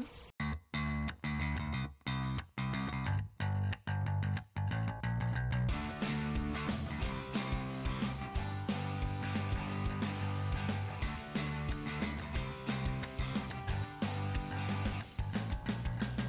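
Background music: muffled and cutting in and out in short breaks for about the first six seconds, then opening up to a full, steady track.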